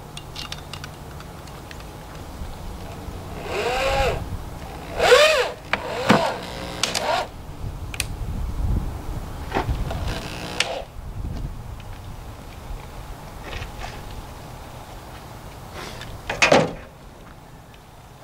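Corded electric drill boring dowel holes into a wooden cabinet cap, run in several short bursts that rise and fall in pitch as the trigger is squeezed and let go. The loudest burst comes about five seconds in, and a last one comes near the end.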